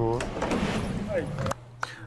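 Speech: a voice at the start, then indistinct voices over a noisy background that cuts off abruptly about one and a half seconds in, leaving a low steady hum.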